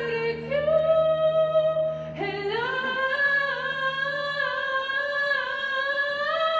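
A female soloist singing long held notes with vibrato, stepping up to a higher note about two seconds in, with a show choir. A low sustained note underneath stops about three-quarters of the way through.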